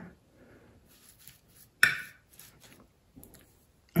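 Hot soldering iron tip being jabbed and wiped in a brass wool tip cleaner: faint scratchy crunching strokes, with one sharper click a little under two seconds in. The old solder coating and flux are being cleaned off the tip.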